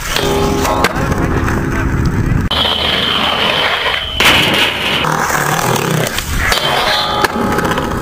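Skateboard wheels rolling on concrete and trucks grinding along a metal handrail, over music. A high steady screech runs for about two seconds in the middle.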